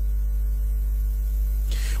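Steady low electrical mains hum, an even drone with faint higher overtones and no change in level.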